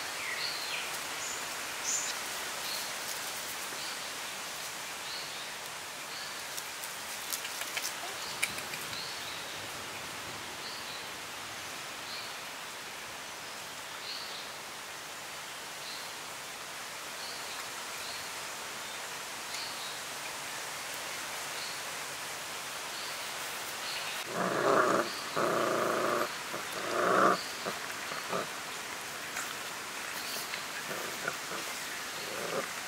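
Puppies vocalizing: near the end, three loud, short calls come in quick succession. Under them runs a steady outdoor hiss with a faint high chirp repeating about once a second.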